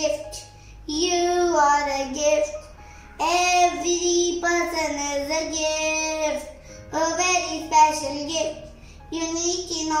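A young boy singing solo, in four sustained sung phrases with short breaks for breath between them.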